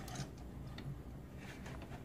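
Faint, scattered light clicks of hard plastic toy robot figures being handled and shifted on a tabletop.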